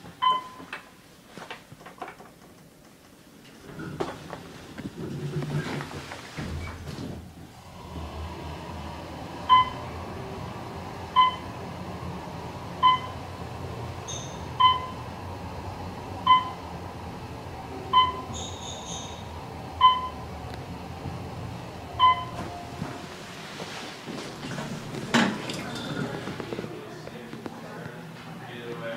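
Hotel passenger elevator descending: a short electronic beep repeats about every 1.7 seconds, eight times, marking the floors as the car passes them, over the car's steady low ride hum. A thud comes near the end.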